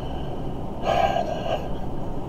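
A man's single audible breath, about half a second long, roughly a second in.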